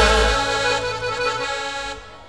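Live band holding one long final chord that slowly fades, the bass dropping out about half a second in, as a song ends.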